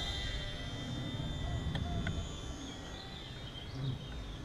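Faint whine of a HobbyZone Sport Cub S RC plane's electric motor, fading within the first couple of seconds as the plane flies off, over steady outdoor background noise.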